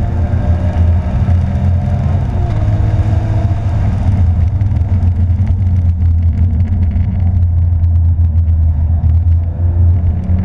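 Porsche 911 GT3's flat-six engine heard from inside the cabin on track, pulling up through the revs along the straight. About four seconds in it drops away as the driver lifts for the next corner, leaving a low rumble and road noise, and it begins to climb again near the end.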